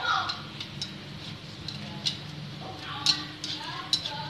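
A wok of salted water boiling with shrimp in it, with a low steady hum under a scatter of light clicks. Indistinct voices are heard at the start and again near the end.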